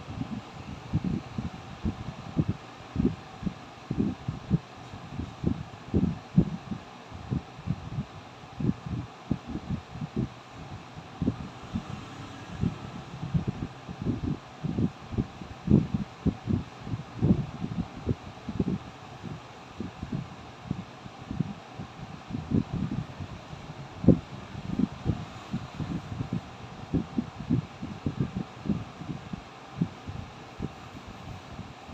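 Soft, low thumps and rubbing close to the microphone, irregular, one to three a second, over a faint steady hiss: handling noise from a phone held by hand.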